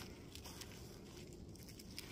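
Near silence: faint background hiss with one or two very faint ticks.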